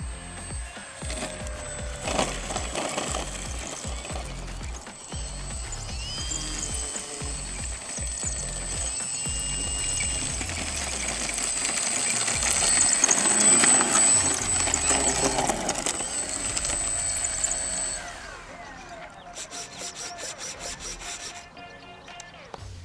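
Electric motor of a FunCub RC model plane whining as it lands and taxis on grass, with background music underneath; the whine cuts off near the end, leaving the music.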